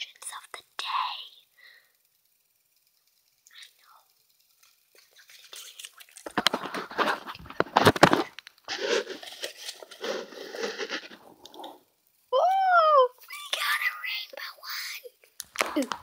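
Close handling and rustling on the tablet's microphone, with many sharp clicks, mixed with a girl's whispering. About twelve seconds in there is a short hummed or sung note that rises and falls.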